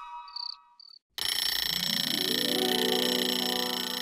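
Music fades out to a brief silence, then crickets chirp steadily from about a second in, suddenly and at full level. Low sustained music notes enter one after another underneath and build up.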